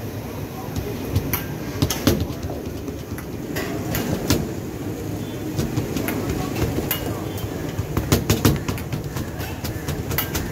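Busy street-food stall ambience: a steady low rumble of street noise with background voices, and many scattered sharp taps and clatters from the work at the stall, thickest near the end.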